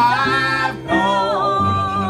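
A man singing a gospel song into a microphone, holding long notes over instrumental accompaniment.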